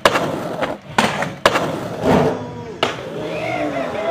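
Skateboard on concrete: several sharp clacks and slaps of the board, with wheels rolling between them. A faint voice calls out in the second half.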